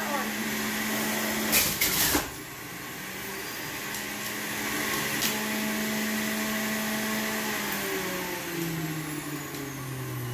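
An Oster centrifugal juicer's motor runs with a steady hum while produce is pushed down its feed chute, with a few sharp knocks about two seconds in. Near the end the motor's pitch falls as it slows.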